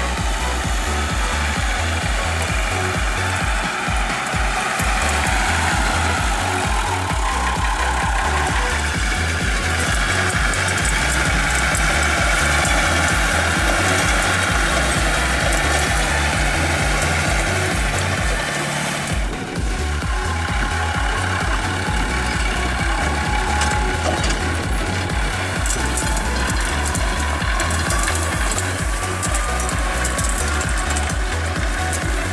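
Background electronic dance music with a steady, pulsing bass beat; the beat drops out briefly about 19 seconds in, then comes back.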